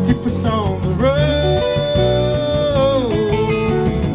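Live rock band playing an instrumental passage between vocal lines, with keyboard, bass, drums and guitar. About a second in, a lead line slides up into a long held note, then drops back near the three-second mark.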